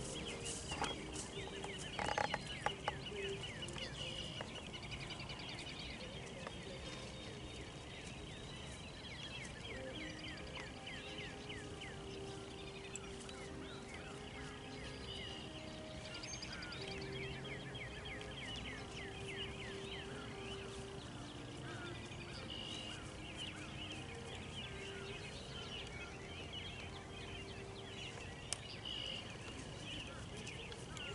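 Birds calling outdoors: many quick, high chirps all through, with some lower held notes through the middle.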